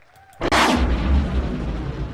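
A deep impact 'hit' sound effect for a video transition. It starts suddenly about half a second in and fades out over the next second and a half.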